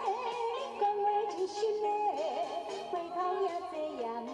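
A woman singing a Taiwanese Hokkien duet song with vibrato into a microphone over band accompaniment, apparently heard through a television's speaker.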